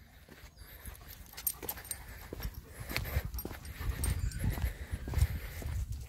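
A dog being walked on a leash over wet concrete paving: soft, irregular footsteps and scattered light clicks and taps. The sounds are faint at first and louder in the second half.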